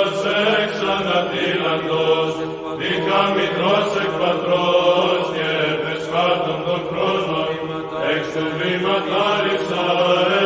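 Orthodox church chant as outro music: a sung melody over a steady held drone note.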